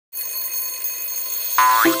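Steady high electronic tones, then about one and a half seconds in a bouncy cartoon-style sound effect begins, louder, with a quick rising 'boing' glide.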